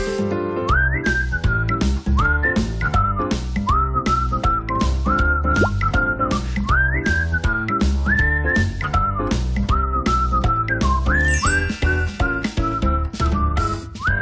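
Upbeat background music: a whistled melody whose notes slide up into pitch, over a steady bass line and light percussion beat.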